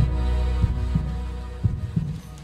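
Heartbeat sound effect, a double lub-dub thump about once a second, over a low sustained musical drone that fades near the end.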